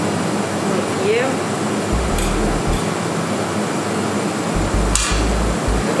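Steady fan-like air noise of ventilation, with a couple of light knocks about two seconds in and again near the end.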